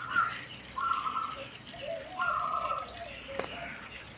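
Water trickling and dripping in a saltwater reef aquarium, in short uneven spells, with one sharp click near the end.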